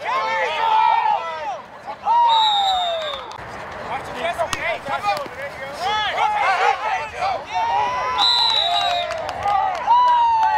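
Players and sideline voices shouting and calling out, many overlapping and unintelligible. A referee's whistle gives two short, steady high blasts, about two seconds in and about eight seconds in.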